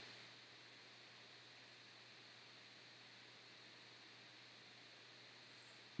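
Near silence: faint steady hiss and low hum of the recording's background.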